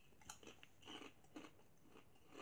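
Faint crunching of a person chewing kettle-cooked potato chips with a closed mouth, four or five soft crunches at uneven intervals.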